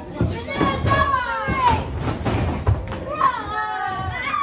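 Audience shouting and calling out, children's voices among them, with pitch that slides up and down. Several dull thuds from wrestlers hitting the ring canvas come through underneath.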